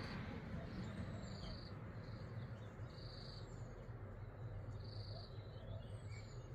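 Faint outdoor bush ambience. An insect calls in short buzzy bursts at one steady high pitch, irregularly about once a second, and a few thin bird whistles slide downward. A low steady rumble runs underneath.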